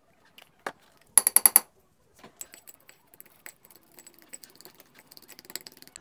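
A metal utensil clinking against small ceramic ramekins as mud is mixed: a quick run of about six sharp, ringing clinks about a second in, then softer scattered clicks and scraping.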